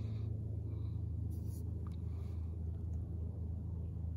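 Steady low background rumble, with a faint click about two seconds in.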